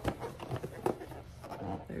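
A cardboard warmer box being picked up and handled, with about four light knocks and some rustling against it in the first second.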